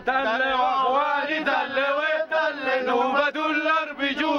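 Men's voices chanting a protest song in Arabic, a sung melodic line in phrases with brief breaks between them.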